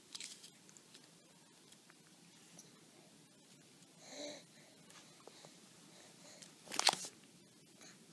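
A baby's small mouth and feeding sounds while he eats from a squeeze pouch of baby food. About four seconds in there is a short voiced grunt, and just before seven seconds a brief, louder burst of noise.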